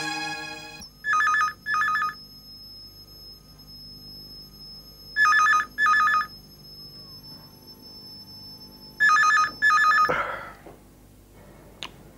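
A telephone ringing in a double-ring pattern: three pairs of rings about four seconds apart, then it stops. A brief rustle and a click follow near the end as the call is picked up.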